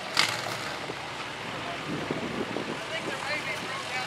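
A full-size pickup truck rolls slowly past towing a flatbed trailer loaded with a demolition derby car, its engine running at low speed, with faint voices in the distance.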